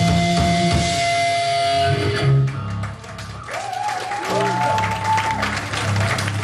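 Hardcore punk band playing live with distorted guitar, bass and drums, the song ending on a final hit about two seconds in. After it, guitar noise rings on with sliding pitch over amplifier hum, with scattered clapping.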